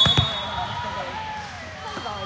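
A referee's whistle cutting off at the very start, then two quick thumps of a volleyball bounced on the hard court floor. Faint, echoing voices from players and spectators in a large gym follow.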